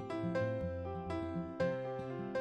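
Gentle instrumental background music: a melody of single plucked or struck notes, about two a second, each ringing out.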